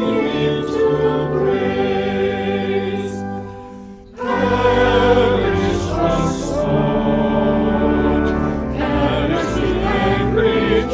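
A small mixed choir of sopranos, tenors and basses, with no altos, singing a prayer for peace. The voices are recorded separately and mixed together. The singing drops away briefly about three and a half seconds in, at the break between verses, and comes back in just after four seconds.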